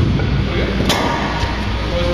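A man laughing over background music, with a single sharp clack about a second in.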